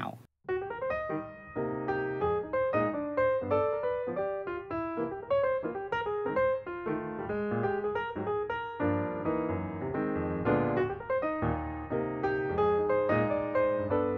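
Background piano music: a steady, unhurried run of notes, starting about half a second in after the talk breaks off.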